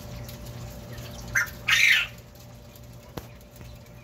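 Coturnix quail calling from the hutch: a short note about a second and a half in, followed at once by a longer, louder call. A single sharp click comes about a second later.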